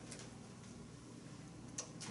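Quiet room tone in a meeting room, with a faint click just after the start and a sharper single click near the end.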